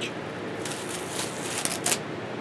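Thin plastic bag crinkling and rustling as it is pulled off a plate and tossed aside, with a few short sharp crackles near the end.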